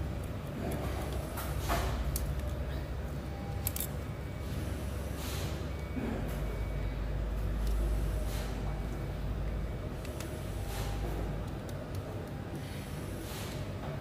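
Faint clicks and rubbing of small plastic and metal parts as the front fan cover is fitted back onto a 3D-printer extruder and its small screw is turned in, over a steady low hum.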